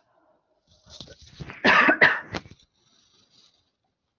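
A woman coughing, a short run of two or three coughs about a second and a half in.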